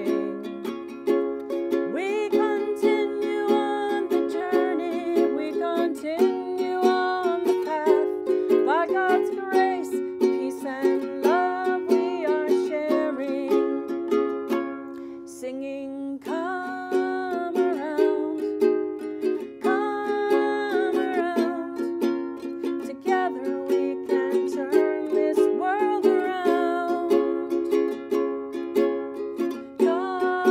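A ukulele strummed in a steady rhythm accompanying a woman singing a slow song, with a short break in the singing about halfway through.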